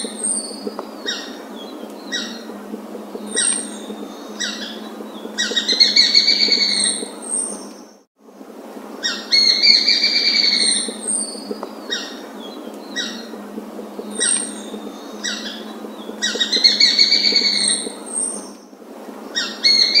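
A bird calling repeatedly over a steady background hiss: three rapid pulsing trills of about a second each, with shorter single notes in between. The sound cuts out briefly about eight seconds in.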